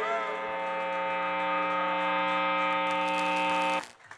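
Electric guitars and bass ringing out a final chord through their amplifiers, held steady with no fading, then cut off suddenly just before the end.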